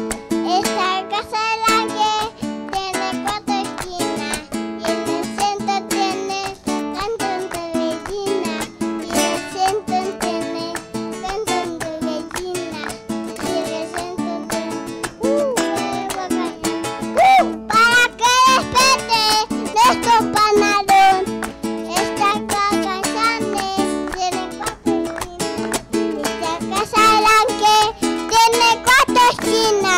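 Acoustic guitar strummed as accompaniment to a small boy singing into a microphone, with adults clapping along.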